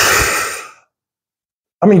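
A man sighing: one breathy exhale that fades out within the first second, close on the microphone. He starts speaking near the end.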